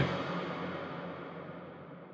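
Long reverb tail of a dark, processed spoken vocal line on a big hall reverb, fading away smoothly and steadily, with a low sustained tone underneath.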